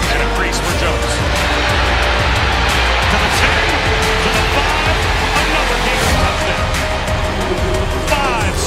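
Background music with a steady low bass under a stadium crowd cheering, the cheering swelling loudest through the middle few seconds.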